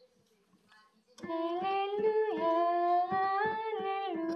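A Catholic hymn begins about a second in: a solo voice sings a slow melody over digital piano accompaniment, with notes struck at a steady pace.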